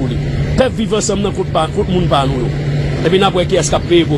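A man speaking in short phrases, with pauses, over a steady low hum.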